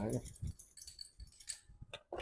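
Metal blade scraping back and forth across the glazed blue-and-white porcelain lid, a thin high scratching with small clicks that stops shortly before the end. It is a scratch test of the underglaze decoration: the glaze stays glossy and unmarked.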